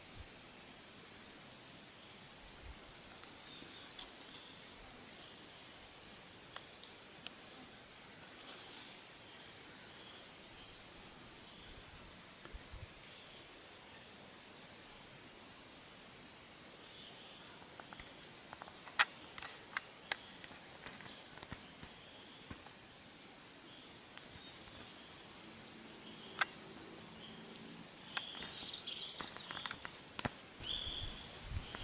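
Faint outdoor ambience with scattered high-pitched chirping, growing busier near the end. A few sharp clicks come in the second half, the loudest about two-thirds of the way in.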